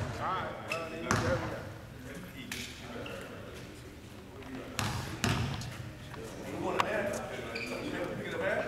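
A basketball bouncing on a hardwood gym floor, four sharp thuds that echo in the hall: one about a second in, two close together near the middle, and one near the end. Low voices of the players talk under it.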